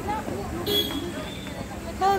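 Indistinct chatter of a group of people, quieter than the talk around it, with a brief high hiss a little under a second in.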